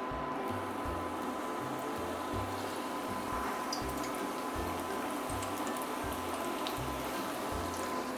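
Battered chicken breast frying in 350°F oil in a carbon-steel wok: a steady sizzle of bubbling oil. Background music with a bass line plays underneath.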